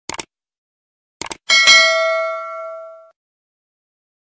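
Subscribe-button animation sound effect: two quick mouse clicks, two more about a second later, then a single notification-bell ding that rings out and fades over about a second and a half.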